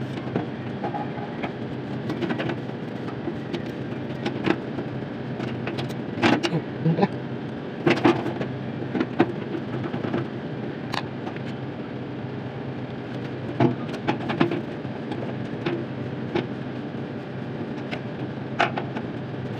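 A steady low mechanical hum runs under scattered sharp clicks and knocks of hands and tools handling the wiring of an outdoor air-conditioner unit.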